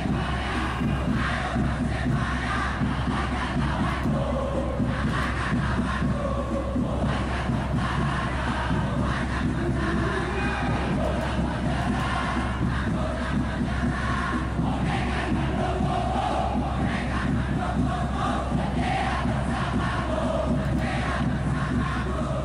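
A large football supporters' crowd in a stadium stand chanting and singing together, a steady mass of voices with no break.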